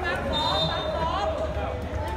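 Spectators talking on the sidelines of a football match, several voices overlapping. A thin steady high tone sounds for about a second near the start.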